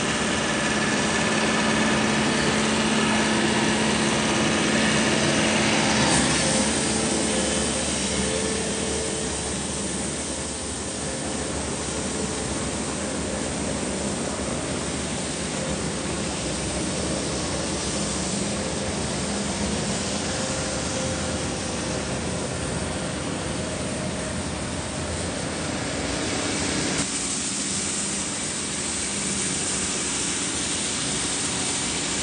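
A small utility work vehicle's engine running close by, with a steady hum, for about the first six seconds. After that the engine tone fades out, leaving a steady, even outdoor noise for the rest.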